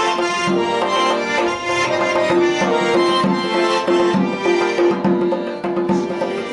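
Piano accordion playing an Ossetian folk tune: a melody over regular bass-and-chord beats, about one beat every 0.7 seconds.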